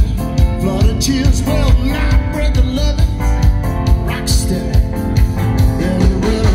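Live rock band playing loudly: electric guitar, drums and keyboards over a steady drum beat, with a lead vocal.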